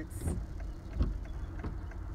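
Low, steady rumble of a van's engine and tyres heard from inside the cabin while driving slowly, with scattered light clicks and a single knock about a second in.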